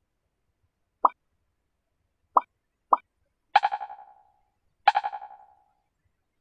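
Synthetic user-interface sound effects: three short blips about one, two and a third, and three seconds in, then two pinging tones that echo away quickly, about a second and a third apart. They mark button presses and screen changes on the analyser's animated display.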